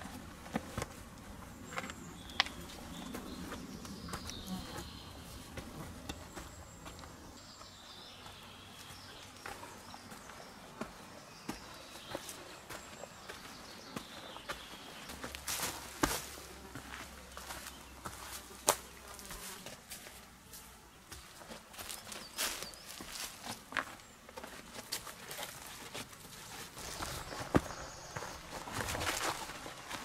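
Footsteps of a hiker climbing steep stone steps and then walking over dry leaf litter: quiet, irregular scuffs and crunches with scattered sharp clicks.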